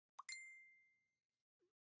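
Subscribe-button animation sound effect: a quick click and pop, then one bright notification-bell ding that rings out and fades over about a second.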